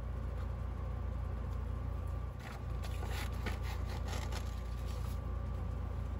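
Soft scratching and rustling of paper being marked with a pen and handled, with a few faint ticks in the second half, over a steady low hum.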